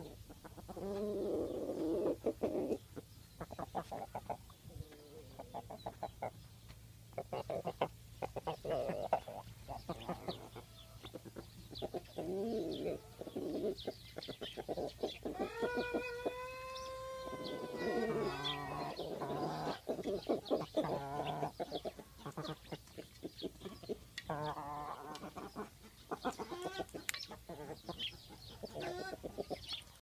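Tringjyrshe (Kosovo tricolour) chickens clucking and pecking, with many short taps throughout. A rooster crows once around the middle, one long arched call of about two and a half seconds.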